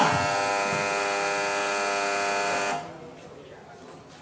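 A loud, steady electric buzz from the cremation furnace, one unchanging tone that starts abruptly and cuts off after nearly three seconds.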